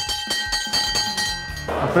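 Bronze school bell rung by tugging its pull cord, ringing with a steady cluster of overtones and light repeated strikes of the clapper. The ringing cuts off abruptly near the end.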